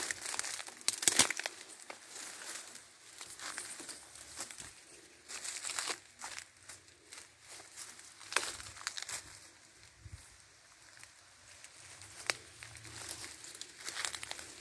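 Dry grass and cane leaves rustling and crackling as someone pushes through a thicket, in irregular bursts of sharp crackles with quieter stretches between.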